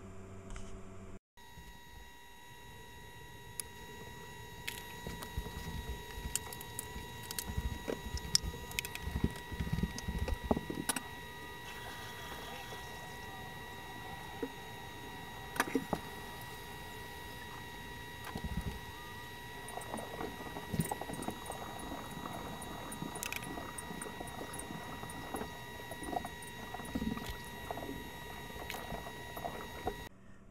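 Room sound fast-forwarded about tenfold: a steady high whine with overtones, with scattered quick clicks and short low thumps. It starts after a brief cut about a second in.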